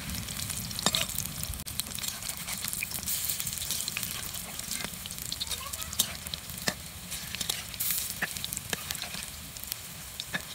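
Cabbage pakoras sizzling steadily in hot oil in a metal wok, with a metal spatula clicking and scraping against the pan as the fritters are turned over, a few sharp clicks standing out.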